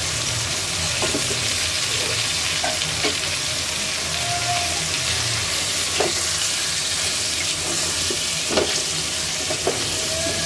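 Chicken feet and potato chunks sizzling in oil in an aluminium pot while a spatula stirs them. There are scattered scrapes and knocks of the spatula against the pot, and the sharper ones come in the second half.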